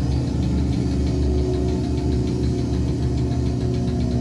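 Live heavy metal band in an instrumental stretch between vocal lines: a dense, steady wall of distorted guitar and bass with drums keeping a fast, even beat of about five hits a second.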